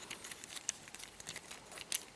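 Faint, irregular little clicks and taps of hard plastic as a Fansproject Downforce action figure is handled and its jointed arms are moved, with one slightly louder click near the end.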